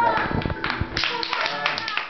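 A small group clapping by hand, with voices talking over the claps. The clapping thickens about a second in.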